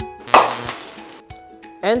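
Glass-breaking crash about a third of a second in, loud and dying away over about half a second, over light background music with evenly spaced plucked notes. The bulb stays whole in the picture, so the crash is an added smash effect.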